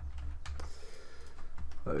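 A few separate keystrokes on a computer keyboard while copying and pasting text.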